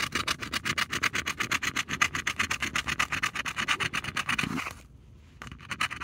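Scratch-off lottery ticket being scratched in rapid back-and-forth strokes, several a second, the latex coating rasping off the card; the scratching stops about five seconds in.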